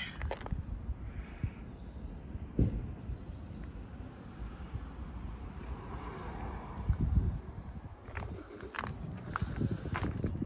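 Footsteps on tarmac under a steady low rumble, with a sharp knock about two and a half seconds in and a couple of heavier thumps around seven seconds.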